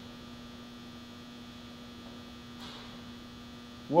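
Steady low electrical mains hum: one unchanging tone with faint higher overtones.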